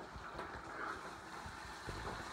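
Faint steady hiss from an electric skillet of beef and broccoli, with a few light knocks and scrapes of a metal spatula stirring the food, one a little louder near the end.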